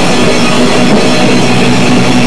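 A rock band playing live and loud: electric guitars and bass through amplifiers, with a drum kit.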